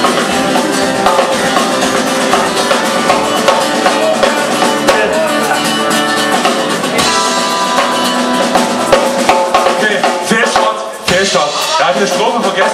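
Live rock band playing a song at full volume: a drum kit with bass drum and rimshots, electric guitars and bass. About eleven seconds in the music briefly drops away.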